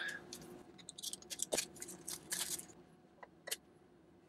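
Plastic packaging crinkling and clicking in short, scattered bursts as a new refrigerator water filter is handled and unwrapped. The bursts bunch up between about one and two and a half seconds in, with a few more near the end.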